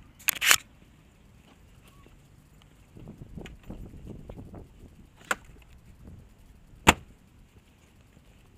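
Handling noise on a body-worn camera as the wearer climbs out of a car: a quick burst of loud clicks at the start, some rustling of clothing and movement, and two sharp knocks later on.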